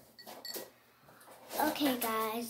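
A few light clicks and a brief glassy clink: a paintbrush tapping the glass rinse cup. About one and a half seconds in, a young girl's voice comes in, holding one pitch, and is the loudest sound.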